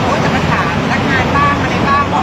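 A woman speaking into a cluster of reporters' microphones, over a steady background noise.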